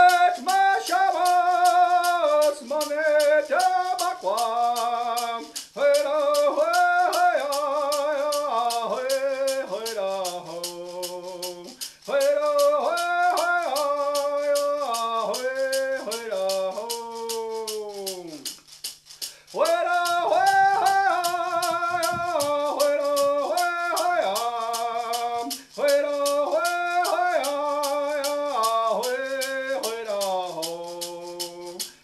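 A man singing a song in sung phrases that fall in pitch at their ends, pausing briefly about twelve and nineteen seconds in. He is accompanied by a shaken rattle keeping a steady beat of about three strokes a second.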